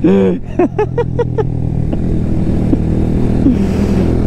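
Motorcycle engine running steadily at cruising speed, heard from the rider's seat, with wind rushing over the microphone. A man laughs in short bursts through the first second and a half.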